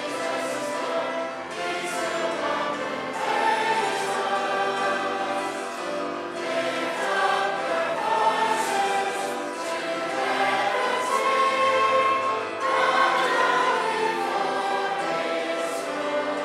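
Church congregation singing a modern hymn together, many voices in sustained lines with musical accompaniment.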